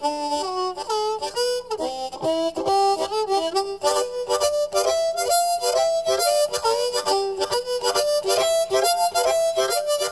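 Harmonica played solo, hands cupped around it, in quick rhythmic blues phrases, with bent notes sliding between pitches.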